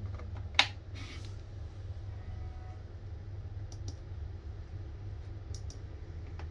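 A sharp plastic click about half a second in, as a USB-C cable plug is pushed into the port of a Lokithor JA301 jump starter. It is followed by a short rustle and a few faint clicks of the cable and plastic being handled, over a steady low hum.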